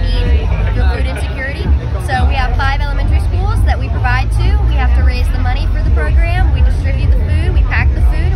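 A woman talking continuously, over a loud, continuous low rumble.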